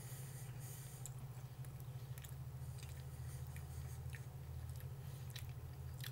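Faint chewing of a pork and buffalo meat stick, with scattered soft clicks, over a steady low hum.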